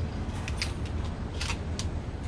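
A Mossberg 500 pump-action 12-gauge shotgun being handled before firing: several light clicks and clacks of the gun and its shells, over a steady low hum.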